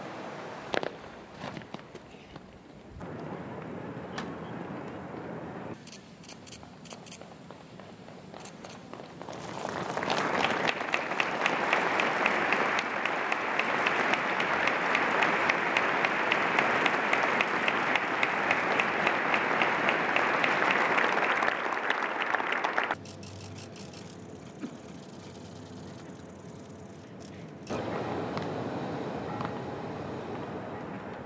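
Crowd applauding: a long round of clapping that swells in about ten seconds in and cuts off abruptly several seconds before the end, with quieter open-air background around it.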